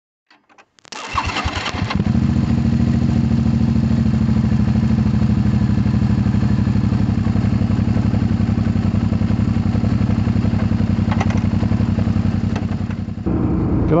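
A 2008 Suzuki V-Strom 650's V-twin, fitted with a Delkevic exhaust, is started. After a few faint clicks the starter cranks for about a second, the engine catches about two seconds in, and it then idles steadily.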